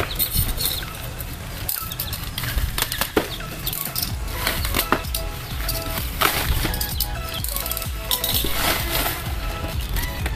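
Bubble wrap and a plastic courier mailer bag crinkling and rustling as they are handled and pulled open, in a run of irregular crackles.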